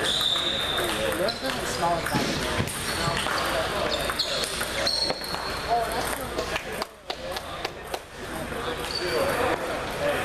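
Table tennis balls clicking sharply off paddles and tables in quick irregular strokes, from this rally and the other matches in the hall, over a background of players' voices.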